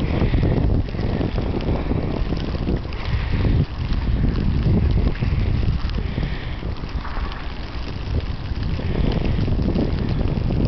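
Blizzard wind buffeting the microphone: a loud, gusty low rumble that rises and falls throughout.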